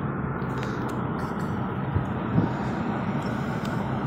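Steady road and engine noise of a moving car, heard inside the cabin, with a couple of light knocks about halfway through.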